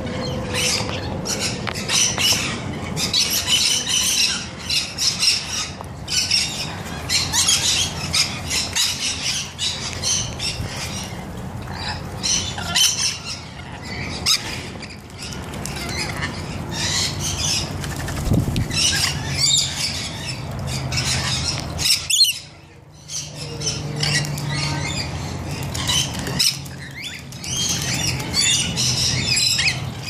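A flock of rainbow lorikeets keeps up shrill, overlapping screeching calls while they bathe, over the splashing and trickling of water in a small fountain pool.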